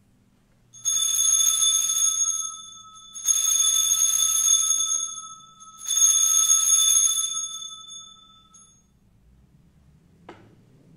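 Altar bells (sanctus bells) rung three times, each a shaken peal of about two seconds that fades out, marking the elevation of the chalice at the consecration.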